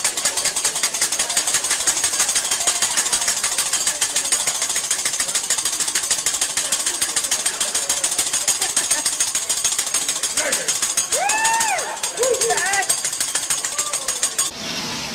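Metal spatula rapidly striking and scraping a steel teppanyaki griddle, a fast, continuous clatter. A voice calls out twice near the end.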